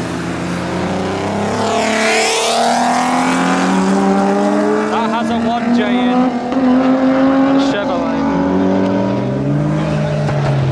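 Modified cars driving off and accelerating. One passes close about two seconds in, then an engine note climbs steadily as a car pulls away, with voices shouting around the middle.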